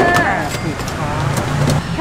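Street traffic with a car engine running steadily, under a brief spoken exchange.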